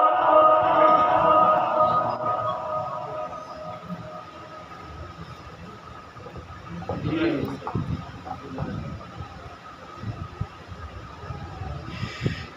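A man's Quran recitation in Maqam Saba holds the last note of a verse and fades out within the first few seconds. Then, in the pause, the hall is filled with low murmur and a few short calls from the audience, loudest about two-thirds of the way through.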